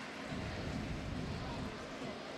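Steady background noise of a large sports hall with faint, indistinct voices of people talking in the distance.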